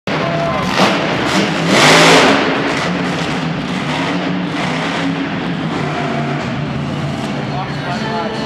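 Monster truck's supercharged V8 engine running and revving in an arena, heard from the stands. A couple of sharp knocks come in the first second and a half as it crosses crushed cars, and a loud noisy surge about two seconds in is the loudest moment.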